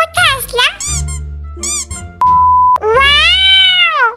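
Comedy-dub soundtrack: background music under short, squeaky, pitched-up voice calls, then a short steady beep about two seconds in, followed by one long high squeaky call that rises and falls.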